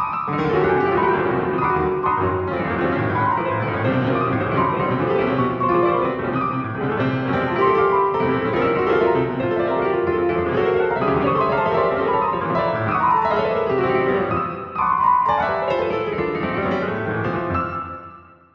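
Piano played by a timsort sorting algorithm: a dense, rapid stream of overlapping notes with several runs climbing in pitch, fading away near the end.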